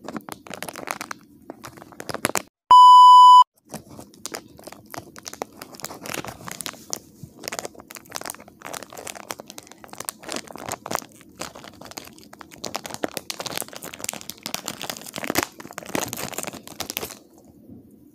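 Foil packet crinkling and tearing as hands open it. A loud single-pitched beep cuts in for under a second about three seconds in.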